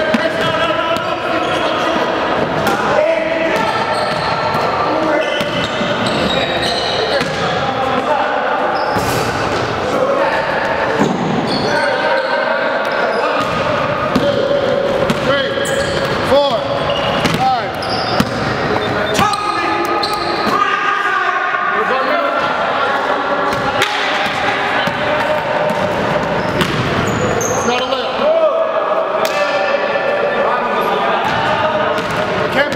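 Basketball bouncing and being dribbled on a hardwood gym floor, with sneakers squeaking as players run and cut, through a busy stretch of play.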